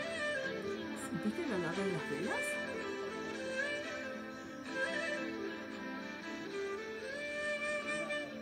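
Slow music of long held notes over a steady low drone, with a brief swooping slide in pitch between about one and two and a half seconds in.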